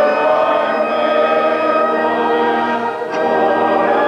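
A choir singing held chords, with a change of chord about three seconds in.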